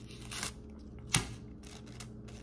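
Paper handling from a pack of rolling papers: a brief rustle, then one sharp snap of paper just after a second in, over a faint steady hum.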